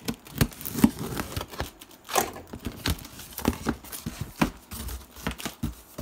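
Folding knife slitting the packing tape on a cardboard box, then tape tearing and cardboard flaps being pulled open: a run of irregular scrapes, crackles and light knocks, with a short squeal from the tape about two seconds in.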